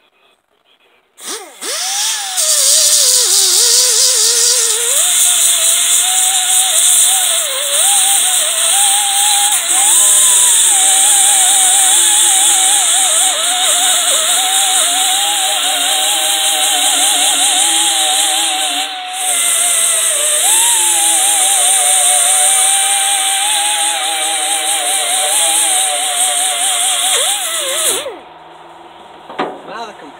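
Pneumatic die grinder grinding heavy rust off the steel deck of a brush hog, a high whine over a hiss whose pitch wavers up and down as the bit bites into the metal. It starts about a second in, dips briefly around the middle, and stops a couple of seconds before the end.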